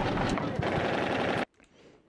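Machine-gun fire in a rapid, continuous stream, cutting off abruptly about a second and a half in.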